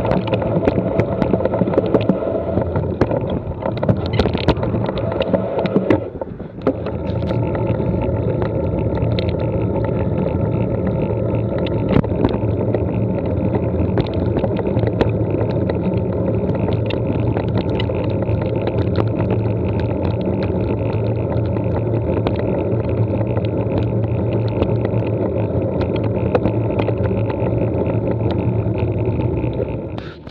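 Wind buffeting the microphone of a bike-mounted action camera while cycling, with steady tyre rumble and frequent small rattles and clicks from the ride, first over a gravel track and then on tarmac. The noise briefly drops about six seconds in, then runs on evenly.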